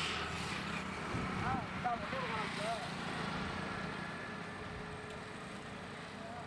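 Road traffic passing close by: an auto-rickshaw and a motorcycle go past, loudest at the start, over a steady background hum of traffic.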